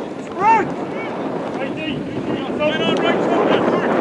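Footballers shouting on an open pitch, with wind rumbling on the microphone: one loud shout about half a second in, then several shorter calls.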